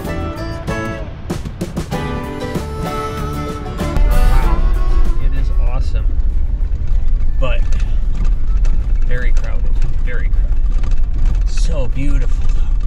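Background music for the first four seconds, then a sudden change to the inside of a Jeep Wrangler JL's cab while it drives a dirt trail: a steady, loud low rumble of engine and tyres.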